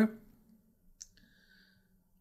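A single faint click about a second in, followed by a faint high tone that fades out within a second, in a pause between a woman's sentences.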